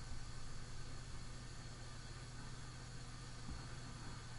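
Quiet room tone: a steady low hum under an even hiss, with one faint tick near the end.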